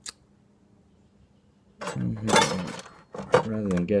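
A light click, then, halfway in, about a second of rustling and scraping as a rubber-jacketed wiring harness is pulled through a cut opening in the plastic tour pack liner, followed by a man speaking.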